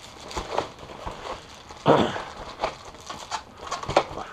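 Crinkling and rustling of a foil-faced bubble-insulation wing bag as a foam model-airplane wing is pushed down into it: irregular crackles, with a louder rustle about halfway through.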